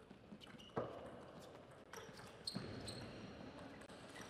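Table tennis doubles rally: a string of sharp clicks as the ball is struck by the rackets and bounces on the table, the loudest about a second in, with short shoe squeaks on the court floor.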